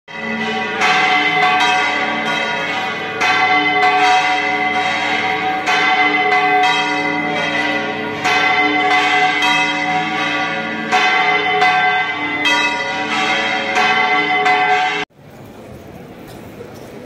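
Church bells pealing, struck again and again so that each ring overlaps the last, then cutting off suddenly near the end.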